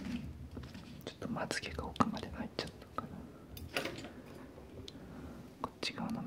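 A man whispering close to the microphone in short breathy phrases, with a few soft clicks in between.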